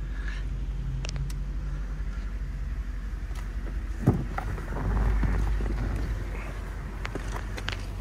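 Low, steady hum of a 2004 Ford Thunderbird's V8 idling, with a few faint clicks and a knock about four seconds in.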